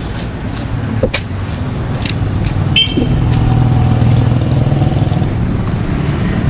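A motor vehicle engine running close by, growing louder about halfway through, with a few sharp clicks and knocks.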